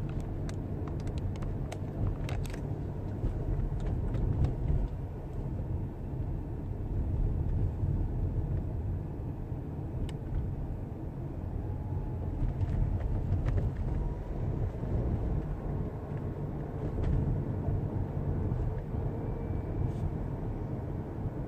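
A car driving on a city street, heard from inside the cabin: a steady low rumble of engine and tyres on the road, with a few brief faint clicks now and then.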